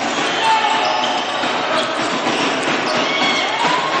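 Live basketball game sound in a sports hall: the ball bouncing on the hardwood court against steady crowd noise, with a few short high squeaks.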